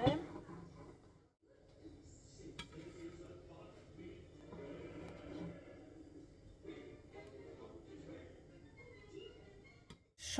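Faint background music and muffled voices, with a few light clicks of a knife against a ceramic plate as a sushi roll is sliced.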